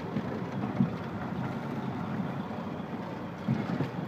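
A vehicle driving slowly, heard from inside the cabin: a steady low engine and tyre rumble as it pulls up over a snowbank to park.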